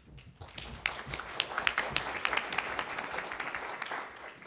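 Audience applauding, a dense patter of hand claps that starts about half a second in.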